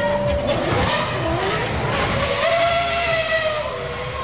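Red Bull Formula One car's engine running on the demonstration course, its pitch rising and falling as it revs and passes, with crowd noise beneath.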